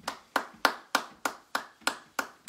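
A single person clapping at a slow, even pace, about three claps a second, in applause just after the piano has fallen silent.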